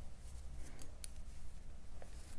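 Faint ticks and rustle of a crochet hook pulling cotton yarn through stitches, a few small clicks near the middle, over a steady low hum.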